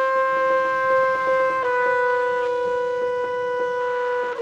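Jazz: a long held horn note that steps down slightly in pitch about one and a half seconds in, over quick, light percussive taps.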